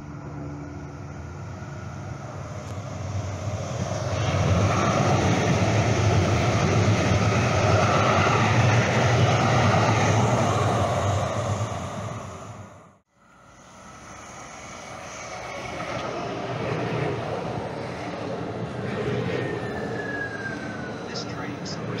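A light-rail train running past on the adjacent track: a steady rumble that swells for several seconds and then fades. After a break, more light-rail train noise beside the platform, with a falling whine near the end.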